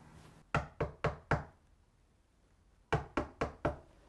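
Knocking on a door: two sets of four quick knocks, with a pause of about a second and a half between them.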